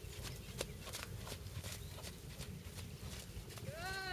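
A horse trotting on a sand arena: soft, irregular hoof strikes over a low steady rumble. Near the end a high call rises and falls.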